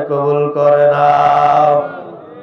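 A man's voice chanting through a microphone, holding one long steady note that breaks off shortly before the end.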